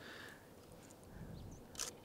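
Quiet outdoor background with a faint low swell in the middle and a single short click near the end.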